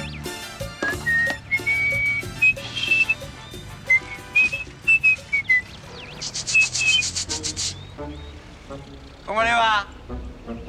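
A man whistling a jaunty tune in clear held notes that hop up and down, over light background music. A buzzing sound lasts about a second and a half past the middle, and a short burst of a man's laughter comes near the end.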